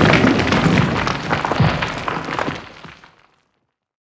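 Logo-animation sound effect of something shattering and crumbling into debris, a dense crackling crash that dies away and ends about three seconds in.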